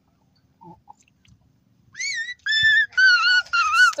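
An animal's high-pitched, wavering calls, four in quick succession starting about halfway through, after a quiet first half.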